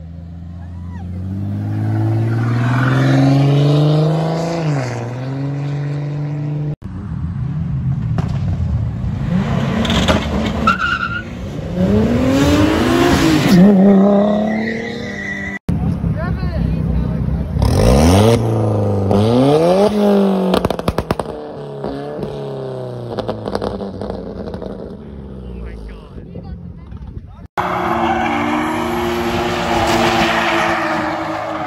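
Performance car engines accelerating hard in a run of separate clips, the revs climbing, dropping at each gear change and climbing again: first a fourth-generation Toyota Supra pulling away, later a white Alfa Romeo 4C. Near the end comes engine noise with tyres squealing as two BMW 3 Series cars drift.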